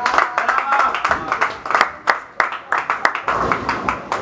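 A small group of people clapping by hand, scattered and uneven claps, with voices talking over it.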